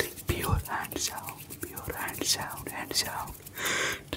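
ASMR mouth sounds: a quick string of breathy, whispered syllables without words, mixed with sharp clicks from fast hand movements, and a longer hiss near the end.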